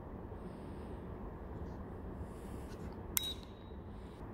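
Quiet room tone, then a single sharp click about three seconds in: the start/stop toggle switch on a Daktronics shot-clock hand controller being flipped.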